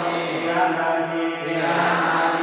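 Buddhist monk chanting in a male voice through a microphone, in long, held, level notes that step in pitch now and then.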